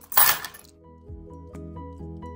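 A brief loud clatter of coins near the start, then background music with sustained notes.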